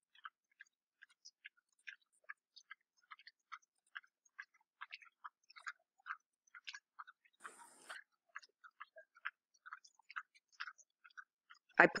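Faint, irregular small clicks, about two or three a second, with a short rustle about seven and a half seconds in.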